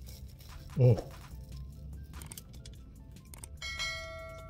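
Chewing a bite of a toasted croissant sandwich, faint small crunches and clicks over a low steady hum. Near the end a ringing, bell-like chime sound effect sets in, several steady tones at once.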